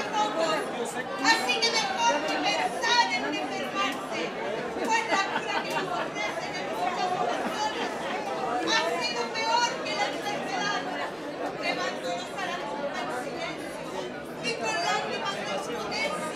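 People talking, overlapping chatter in a large hall.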